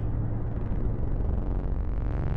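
Steady low rumbling drone with a faint hiss above it, the background sound bed under the narration.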